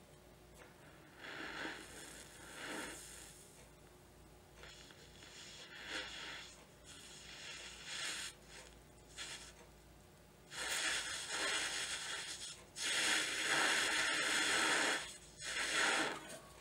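Breath blown through a jeweler's mouth blowpipe into a lamp flame to heat a ring for soldering: several short, fainter blows with pauses for breath, then two long, louder blows from about ten and a half seconds in.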